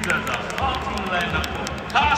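A voice over a stadium public-address system making an announcement, over the steady noise of a large crowd.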